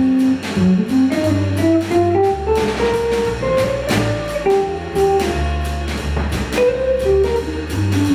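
A small jazz group playing. A single-note melody runs up and down in quick steps over a bass line, with drums on a Gretsch kit and frequent cymbal strokes.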